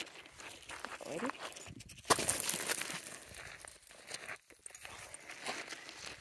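Footsteps crunching on a gravel path, with a louder scraping scuff about two seconds in.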